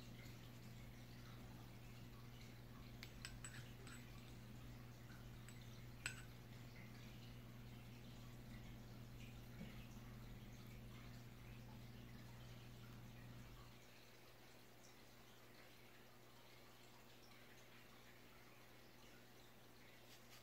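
Near silence: faint room tone with a low steady hum that cuts out about two-thirds of the way through, and a few faint clicks, the clearest about six seconds in.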